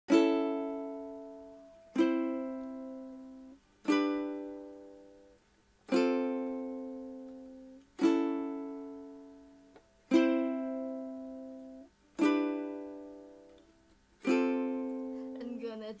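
Ukulele: eight single strummed chords about two seconds apart, each struck sharply and left to ring and die away.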